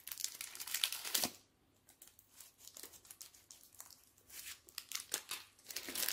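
Crinkling of the sterile paper-and-plastic packaging of a syringe and needle as gloved hands handle it and peel it open. The crackles are irregular, stop after about a second, and pick up again near the end.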